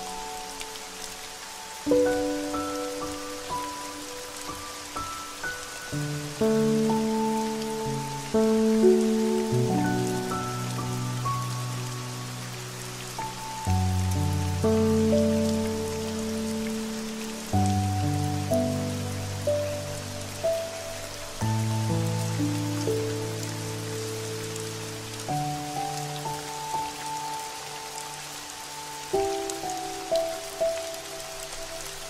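Steady rain falling, mixed with slow, calm sleep music: soft sustained chords that change about every four seconds, with no beat.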